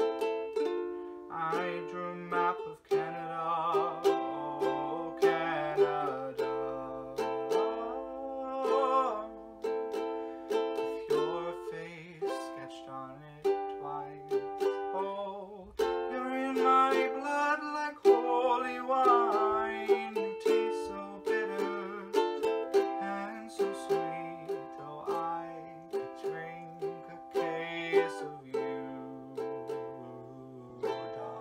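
Ukulele strummed in a steady rhythm of chords, with a man singing over it in several phrases.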